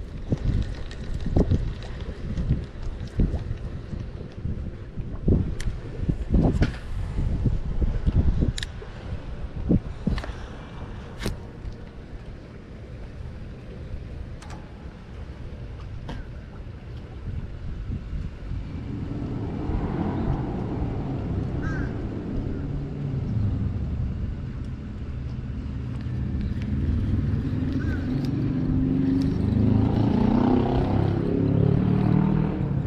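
Wind gusts and handling bumps on the microphone, with a few sharp clicks, over the first half. Then an engine drone rises over the second half and grows steadily louder toward the end.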